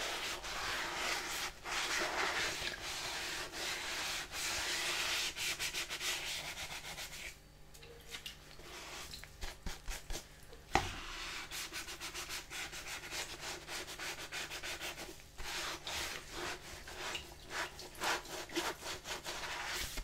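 Sponge scrubbing the inside of a colander: steady rubbing for about seven seconds, a brief lull, then quicker short scrubbing strokes with a single sharp knock about eleven seconds in.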